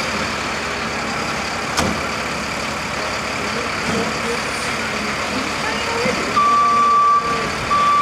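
Fire engine's diesel engine idling steadily, with a single sharp click about two seconds in. About six seconds in, a vehicle reversing alarm starts beeping at one steady pitch, long beeps with short gaps.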